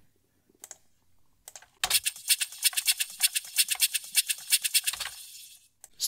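A drum loop played through FL Studio's Fruity Convolver, with a foley sample as the impulse: a fast run of dry, clicky ticks, about seven or eight a second. It starts about two seconds in and fades away just before the end, after a couple of faint clicks.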